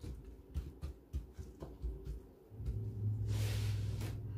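Chopped vegetable pieces being pushed around and spread by a gloved hand on a metal baking tray: soft scattered clicks and knocks. About two-thirds in, a low steady hum starts and keeps going, with a brief rustle just before the end.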